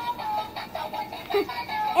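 Light-up bubble gun toy playing an electronic song with synthesized singing, a melody of steady held notes stepping in pitch.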